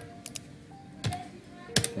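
Computer keyboard typing: a handful of separate keystroke clicks, the loudest a quick pair near the end, over faint steady background music.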